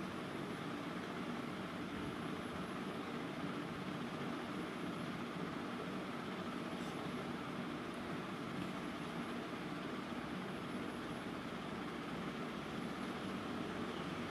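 Steady background hiss with a faint hum and no distinct events; no scraping or cutting strokes stand out above it.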